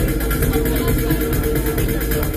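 Loud live electronic music over a club sound system, with a steady, pulsing bass beat.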